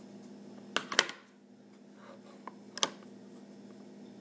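A few light, sharp clicks and taps from a plastic blush compact being snapped shut and handled, the loudest pair about a second in and two more near three seconds.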